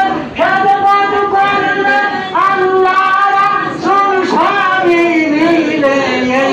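A high voice singing a Bengali zikir (Sufi devotional) song in long held phrases, several of which open with an upward slide in pitch.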